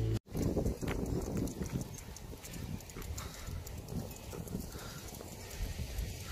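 Music stops abruptly just after the start. Then footsteps knock and scuff on pavement over an irregular low rumble of wind on the phone microphone.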